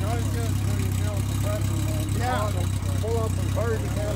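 1960 Renault 4CV's rear-mounted four-cylinder engine idling steadily, freshly started with the hand crank.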